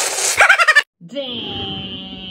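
A man snorts hard through his nose, drawing a drink up straws, and breaks into a quick, stuttering laugh. After a short gap comes a long, steady held vocal tone.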